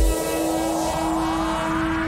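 Deep house track in a breakdown: the kick drum drops out and a rising sweep climbs steadily in pitch over a single held low note, building toward the drop.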